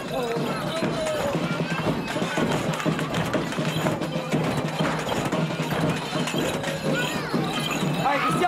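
Festival music with a steady beat, heard over a crowd's voices and shouts.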